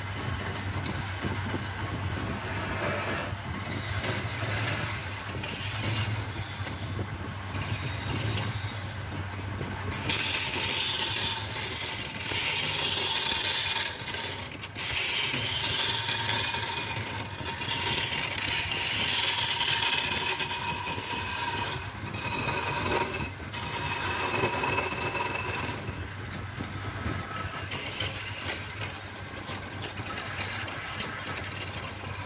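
Wood lathe running with a steady low hum while a hand-held turning chisel cuts the spinning wooden workpiece. The cutting noise gets much louder about ten seconds in, with a couple of brief breaks where the tool comes off the wood.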